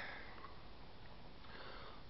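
A man's faint sniff, over low room tone.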